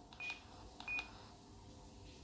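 Two short, high key-press beeps from an Icom handheld transceiver, about two-thirds of a second apart, each with a faint click of the button, as its menu keys are pressed to back out of a menu.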